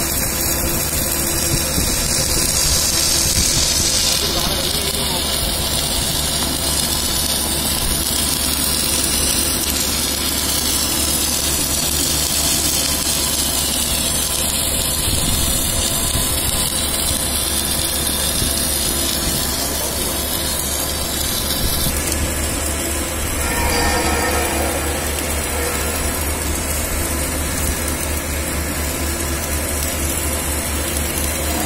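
Submerged arc welding station at work: a steady mechanical drone with a constant electrical hum and a high hiss.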